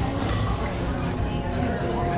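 Busy restaurant dining-room background of murmuring voices and faint music, with a few brief crunches in the first second as a fried potato is bitten.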